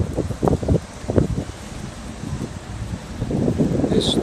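Wind buffeting the microphone in irregular low gusts, strongest in the first second and a half, over the steady noise of city street traffic.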